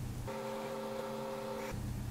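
Faint steady hum. For about a second and a half in the middle, a few steady higher tones take the place of the low hum, then the low hum returns.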